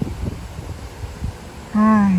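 Low, steady background rumble with a few faint taps, then a short voiced sound from a person near the end, falling slightly in pitch.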